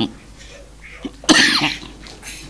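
A person's single short, loud vocal burst about a second and a half in, like a cough.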